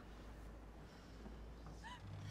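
Near silence: a steady low room hum, with one brief faint sliding tone near the end.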